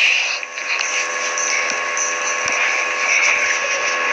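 A steady hiss of noise with a few faint steady hum tones underneath, dipping briefly about half a second in.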